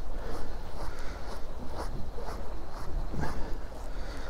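Fishing reel being wound in steadily, with irregular soft clicks over a low rumble.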